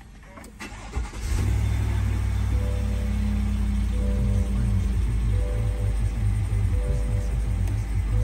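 Music playing loudly from the SUV's Bose sound system, coming on suddenly about a second in, with a heavy bass line and short repeating notes.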